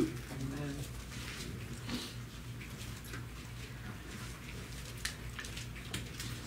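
Quiet small-room tone with a steady low electrical hum and a few faint short clicks, about two and five seconds in.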